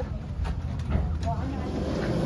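Footsteps and a low, steady rumble along an airport jet bridge, with a few sharp clicks and brief snatches of voices.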